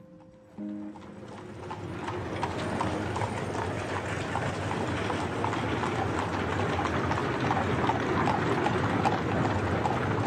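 Hooves of carriage horses clip-clopping among a steady clatter of street traffic. It fades in over the first couple of seconds as a few notes of piano music die away.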